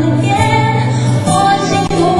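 A woman singing held notes of a pop ballad over a band's accompaniment with a steady bass line, the notes changing every half second or so.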